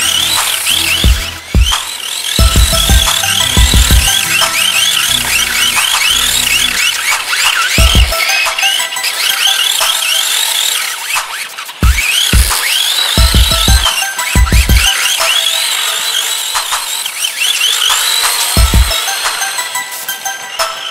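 Electronic background music, with heavy bass hits that come in clusters and drop out for a few seconds at a time, over many quick rising high-pitched synth sweeps.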